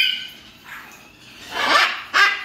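A parrot's loud, harsh squawk starting about one and a half seconds in, after a short high call trails off at the start.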